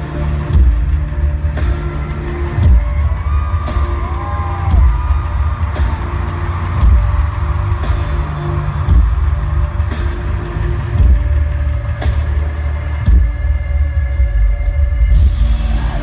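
Live pop concert music played over a stadium sound system, picked up by a phone from the floor. A heavy, distorting bass beat pulses about once a second throughout.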